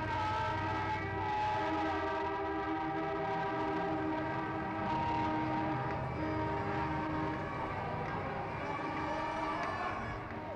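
Many horns sounding together in a dense, sustained chorus of overlapping steady tones, with one horn sliding down in pitch about a second in, over a low rumble of city noise.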